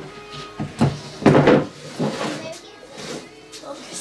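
Wooden knocks and a short clatter as wooden birdhouse pieces are handled and set down on a workbench, the loudest about a second in, with voices.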